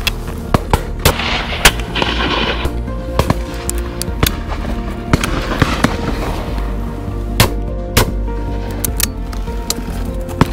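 Shotgun shots cracking over background music: about a dozen separate shots scattered through, some sharp and loud, others fainter. The loudest comes about a second and a half in.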